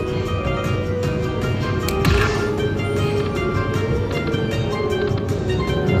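Dragon Link Panda Magic slot machine playing its hold-and-spin bonus music steadily while a bonus spin runs. There is a sharp click and a short burst of sound about two seconds in.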